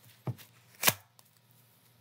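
A deck of tarot cards being shuffled by hand, with two sharp clacks of the cards about half a second apart, the second louder.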